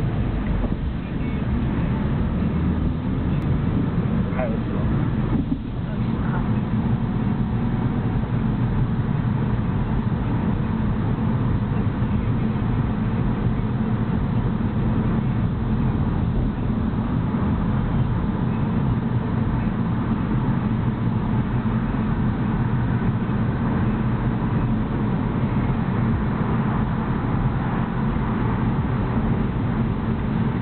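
Steady engine and road noise heard inside a moving car's cabin, a low rumble that holds level throughout.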